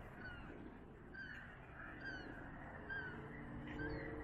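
Gulls calling: a faint string of short, downward-slurred cries, about one every half second.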